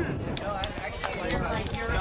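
Voices talking, with scattered sharp knocks about half a second apart.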